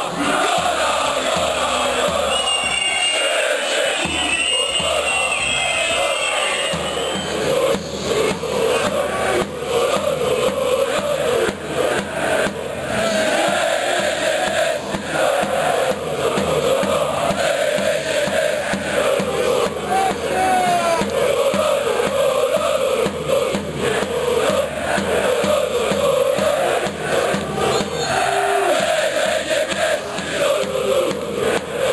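A large crowd of football supporters singing a chant together, loud and unbroken.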